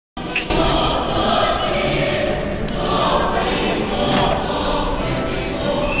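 A young choir singing together, heard from among the audience in the hall.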